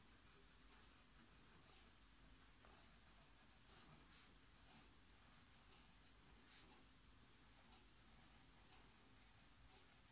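Faint scratching of a 0.5 mm mechanical pencil lead on ruled notebook paper as cursive letters are written, short irregular strokes with a few slightly louder ones about four and six and a half seconds in.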